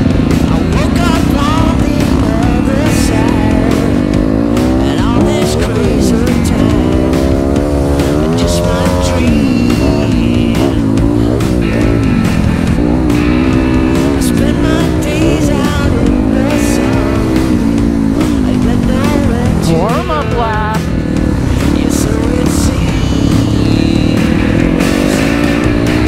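Dirt bike engine revving up and dropping off again and again as it is ridden around a motocross track, with music playing over it.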